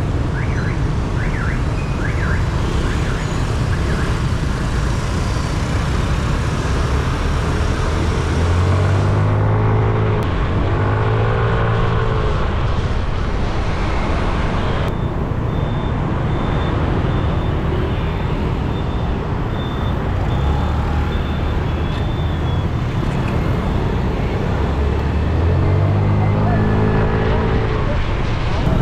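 Wind rushing over the microphone with street traffic while riding a motor scooter through city traffic. Motorbike engines rise in pitch as they accelerate, about nine seconds in and again near the end.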